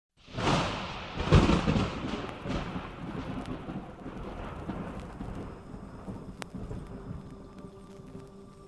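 Thunder ambience at the start of a chillstep track: a rumbling thunderclap over steady rain, loudest about a second in and slowly fading. Faint sustained synth tones come in near the end.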